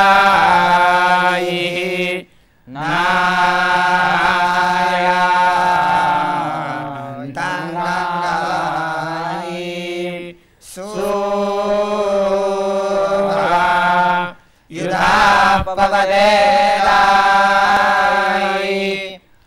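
A group of young men chanting a Sanskrit hymn in unison, in long sustained phrases with brief pauses for breath about two seconds in, about ten seconds in and about fourteen and a half seconds in.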